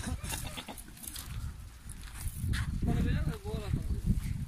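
Farmyard sounds: faint animal calls from goats and chickens with distant voices in the background, over a low rumble.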